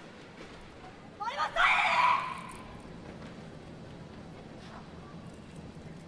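A woman's single loud shout about a second in, a karateka calling out the name of her kata, Oyadomari no Passai, which rings briefly in the arena. After it only the low, steady murmur of the hall remains.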